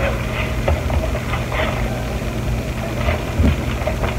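Paper napkins rustling as they are handled and shuffled, a few short rustles over a steady low hum.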